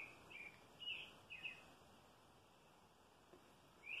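Near silence with a few faint, short bird chirps, several in the first second and a half and one more just before the end.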